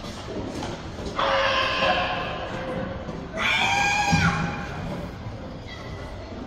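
Two long, high-pitched shouts by a person's voice, each about a second long and roughly two seconds apart, over the steady background of a large sports hall. The second shout drops in pitch at its end.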